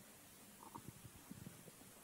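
Near silence: room tone with a few faint, short rustles.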